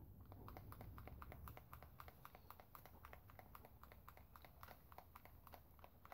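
Near silence with a low hum and faint, irregular light clicks, a few a second.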